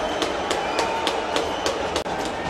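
Ice hockey arena noise after a goal: a steady crowd-like din with sharp knocks repeating at a regular rate of about three to four a second.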